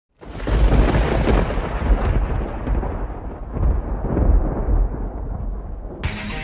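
Loud rolling thunder that breaks in suddenly out of silence, swelling about one, two and four seconds in, with its crackle fading toward the end and the deep rumble running on.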